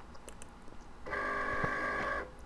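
A steady electronic alert tone, several pitches sounding together, starting about a second in and lasting about a second before cutting off.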